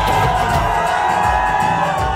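Wedding music with one long held note, over a crowd cheering and whooping.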